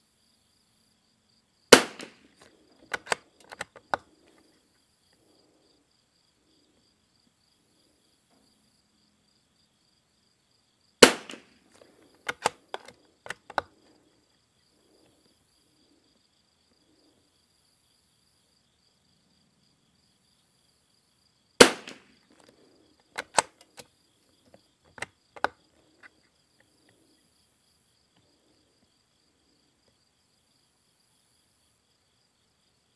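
Three shots from a Lithgow LA101 bolt-action .22 LR rifle firing RWS R50 rounds, about ten seconds apart. Each shot is followed within two seconds by a quick run of metallic clicks as the bolt is worked to eject the case and chamber the next round. Crickets chirp steadily underneath.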